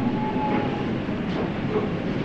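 Steady background hiss and rumble of an old microphone recording, with a faint steady tone for a moment at the start.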